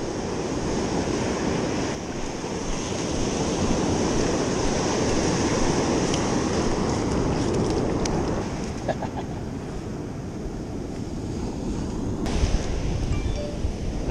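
Ocean surf breaking and washing up a sandy beach, with wind buffeting the microphone, heavier in the last couple of seconds.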